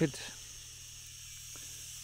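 Steady high-pitched chirring of insects in dry grassland, with the tail of a spoken word at the very start.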